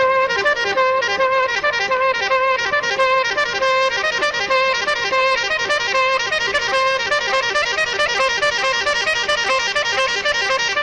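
Instrumental romantic ballad music with a saxophone playing the melody over a backing track, at a steady level.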